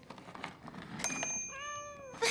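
A cat meows once, a single drawn-out meow near the end, over faint thin high chiming tones that begin about a second in.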